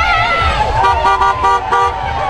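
A car horn sounding in a rapid series of short toots, about five in a second, starting about a second in, over children cheering and shouting.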